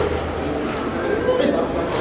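A man's voice making drawn-out, wavering moans of distress while he is held down for a nasal swab.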